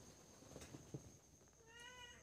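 A domestic cat gives one short, faint meow near the end.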